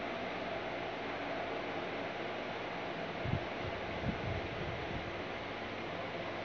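Steady hiss of background room noise, with two faint low thumps about three and four seconds in.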